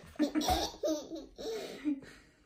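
A young girl laughing in short bursts, with a low thump about half a second in.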